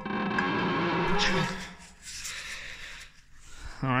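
A man's loud, strained growl for about a second and a half, mock-bending a steel flat bar 'with his teeth', ending in a short laugh.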